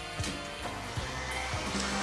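Background music, with a stand mixer's motor starting up about a second in: a rising whine that settles into a steady hum as the wire whisk begins beating heavy cream.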